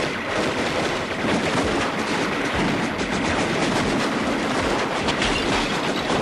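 Continuous rapid gunfire, many shots crowding together with no pause.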